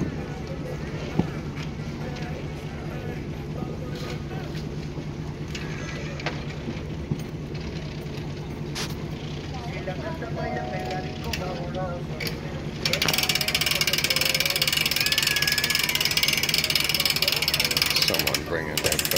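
Distant fireworks going off as scattered sharp pops over a steady low hum. About thirteen seconds in, a loud, steady hiss starts suddenly and drowns them out.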